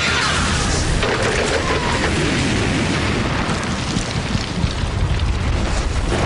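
Cartoon sound effects of a long rumbling explosion, with debris flying, under dramatic background music.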